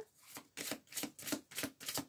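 A deck of oracle cards being shuffled by hand, a quick run of light card-on-card flicks, about four a second.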